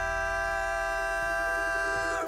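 Male vocalist in a bluegrass band holding one long, steady sung note, over quiet banjo and acoustic guitar.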